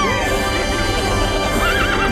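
A horse whinnying over background music, with a wavering call near the end.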